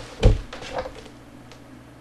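A single low thump about a quarter second in, followed by a few fainter knocks, like objects being handled on a desk.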